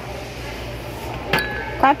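A glass goblet clinks once about a second and a half in, ringing briefly with a clear tone as it is handled.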